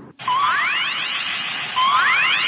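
An electronic sound effect begins just after a brief silence: a steady hiss with two rising sweeps, each climbing quickly in pitch, about a second and a half apart.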